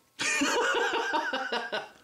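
A man laughing, a run of breathy chuckles lasting about a second and a half.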